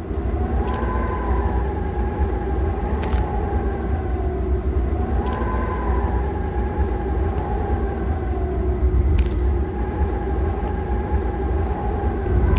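A steady low rumble with faint tones that slowly rise and fall, and a few sharp clicks.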